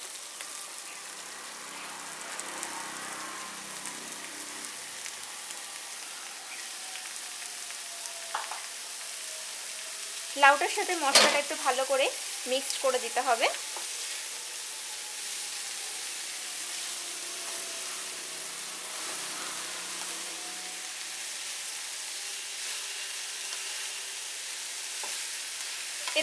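Chopped bottle gourd frying with moong dal and spices in a non-stick pan, turned with a wooden spatula: a steady sizzle under the sounds of stirring. A louder burst lasts about three seconds around the middle.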